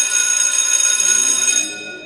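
A bell ringing steadily with a bright, high-pitched ring. It stops about three-quarters of the way through and its ring dies away.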